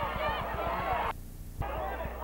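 Spectators shouting and cheering, many voices yelling over one another; the sound drops out briefly just past the middle, then resumes.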